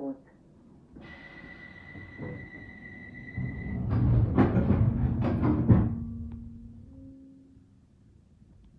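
Door-closing sequence on a Bakerloo line 1972 stock tube train: a steady high warning tone for about three seconds, then the sliding doors shutting with a run of loud thumps and knocks. A low hum follows, stepping up in pitch near the end.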